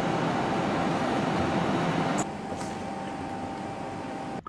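Steady machine hum and noise with a constant high whine running through it, dropping somewhat in level a little past halfway.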